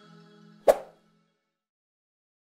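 The last faint tail of outro music fades out, then a single sharp pop sound effect about two-thirds of a second in, with a brief ring: the click sound of an animated subscribe-button press.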